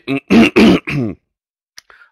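A man clearing his throat: a quick run of about five rough, voiced pulses in the first second, then a pause.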